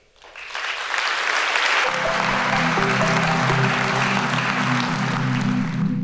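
Audience applauding, swelling within the first second and then holding steady. About two seconds in, closing music with low sustained notes starts under the applause.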